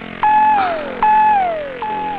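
Suspense background score: a synthesizer note that holds briefly, then slides down in pitch, repeated three times about 0.8 seconds apart.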